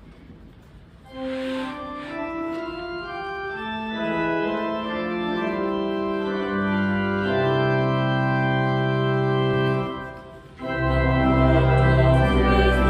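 Instrumental introduction to a hymn: slow, sustained chords, notes entering one after another from about a second in and building up. It breaks briefly near the end, then comes back louder and fuller with deep bass.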